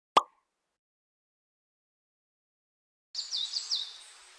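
Editing sound effects: a single short pop just after the start, then silence, then about three seconds in a quick run of three high-pitched falling chirps over a soft hiss, marking the cut to the title card.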